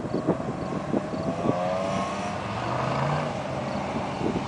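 A BMW E36 3 Series drifting: its engine revs in rising and falling notes as it slides, with its tyres squealing and smoking, and a climb in pitch near the end as it pulls away.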